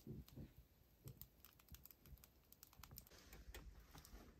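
Wood fire in a stove crackling faintly, with small irregular pops and snaps from the burning split logs.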